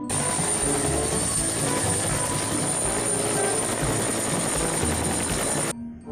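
Helicopter sound effect: a loud, dense noise with a steady high whine, starting suddenly and cutting off sharply just before the end.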